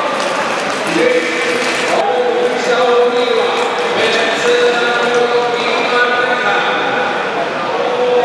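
A voice speaking without pause, echoing in a large hall.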